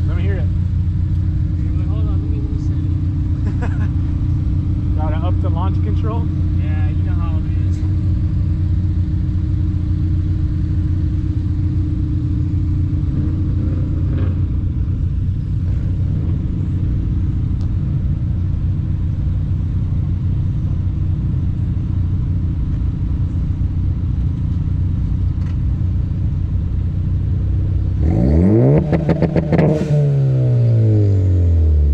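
Car engine idling steadily close by, then revving up and accelerating away about two seconds before the end, its pitch climbing sharply and then dropping.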